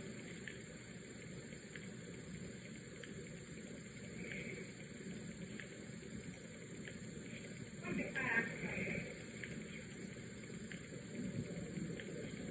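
Faint, muffled voice heard through a wall, coming in short bursts about four seconds in, more strongly around eight seconds, and again near the end, over a steady hiss.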